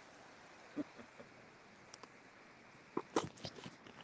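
Handling noise as a phone is moved about and an acoustic guitar is brought into playing position: a single knock just under a second in, then a quick cluster of sharp knocks and bumps about three seconds in, the loudest part.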